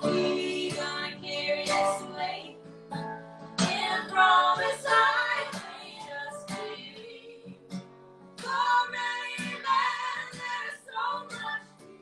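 Acoustic guitar played with women's voices singing together. The voices drop out for a couple of seconds in the middle before coming back.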